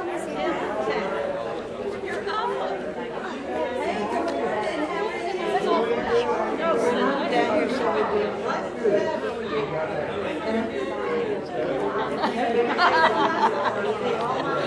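Many voices chatting at once in a large, echoing hall: a gathering of people in overlapping conversation, with no single voice standing out.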